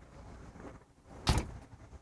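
A single sharp clunk about a second and a quarter in, consistent with the fire truck's cab door being shut, over a faint background.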